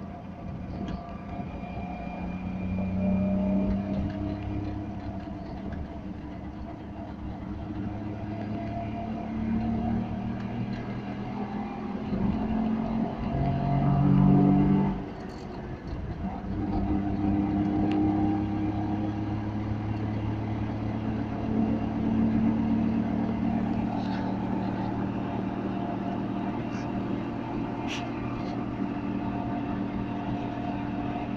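Wartburg 311's three-cylinder two-stroke engine heard from inside the cabin while driving. Its pitch climbs several times as the car accelerates, is loudest about halfway through, then drops sharply and settles to a steadier run.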